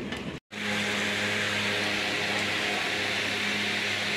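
A short stretch of music cuts off about half a second in. After it comes a steady low electric hum with an even rushing hiss, like a small electric motor running.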